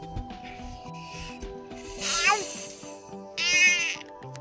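Music with a steady bass line, over which a small child squeals twice: a squeal gliding down in pitch about two seconds in, then a louder, high-pitched shriek near the end.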